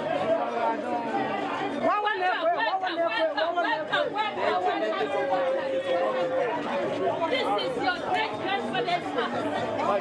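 Crowd of people talking and calling out at once, many overlapping voices. One voice holds a long call on a single pitch about halfway through.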